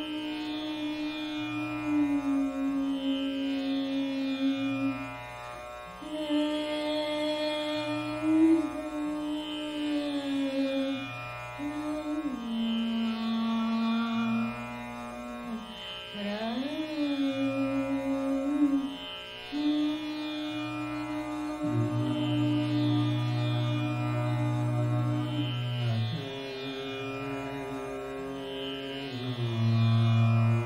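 Dhrupad singing in Raag Jaijaiwanti: a female voice holds long notes with slow glides between them over a tanpura drone plucked in a steady repeating cycle. About two-thirds of the way through, a lower male voice comes in and carries the line.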